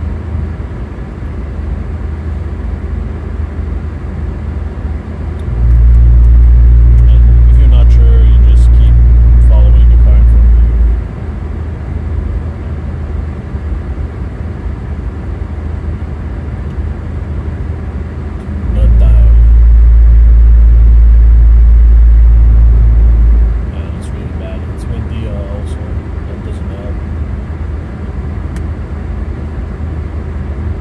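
Steady road and tyre noise inside the cabin of an Infiniti Q50 Red Sport driving on a snow-covered highway. Twice a loud, deep rumble lasting about five seconds swamps everything, first about five seconds in and again just before twenty seconds.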